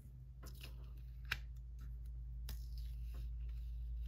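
Faint ticks and light rustles of a paper planner sticker being lifted off its sheet with a metal tool and pressed onto the page: five or six small clicks, the sharpest a little over a second in, over a low steady hum.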